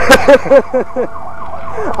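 A person laughing close to the microphone in a quick run of about five 'ha' bursts, loud at first and weakening over about a second, then trailing off.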